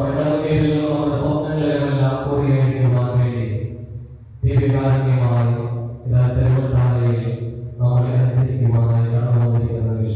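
A voice chanting a Malayalam devotional prayer during Eucharistic adoration, in long held phrases with short breaks.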